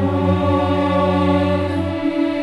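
A choir singing a long held chord over a sustained low bass note, with the harmony moving to a new chord at the very end.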